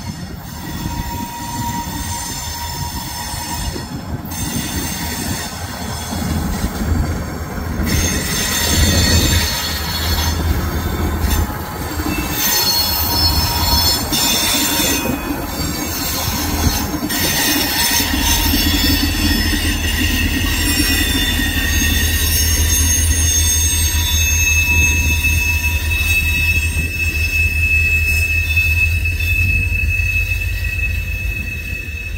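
Freight train crossing an old wooden trestle overhead: a diesel locomotive's low rumble, then covered hopper and tank cars rolling by. From about 8 seconds in, high thin steel-wheel squeal rides over the rumble.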